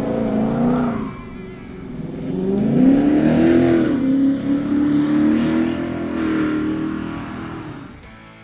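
Ford Coyote 5.0 V8 in a 1975 Ford F-250 accelerating: the engine note rises steeply about two and a half seconds in, holds, then fades toward the end.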